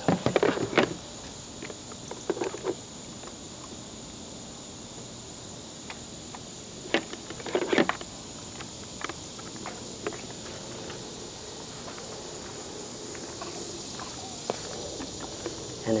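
Steady high-pitched chirring of insects, with scattered clicks and rustles as a charger plug and its cable are handled and pushed into a battery's charging port, the loudest handling noise about seven to eight seconds in.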